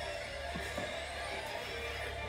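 Quiet background music with a steady low hum underneath, no speech.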